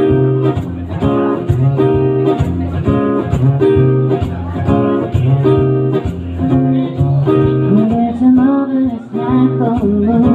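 Acoustic guitar strumming chords in a steady rhythm, playing a live song intro. About eight seconds in, a voice joins with a few gliding notes.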